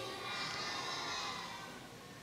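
Faint hall ambience: a low murmur of children's voices from a large group, fading slightly near the end.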